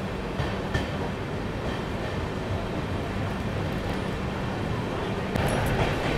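Passenger train coach running on the rails, heard from its open doorway: a steady rumble of wheels on track, with a sharp knock about a second in and a louder rattling burst near the end.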